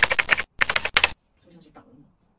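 Small hard cosmetic containers and tubes clattering against each other in two quick bursts of rapid clicks during the first second, then a much fainter rustle near the end.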